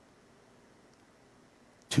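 Near silence: faint room tone during a pause in speech, with a man's voice starting again right at the end.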